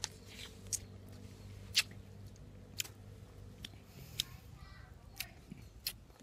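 Faint, scattered sharp clicks and wet tearing sounds, roughly one a second, as a large peeled seedless lime is pulled apart and squeezed by hand, over a faint low hum that fades out partway through.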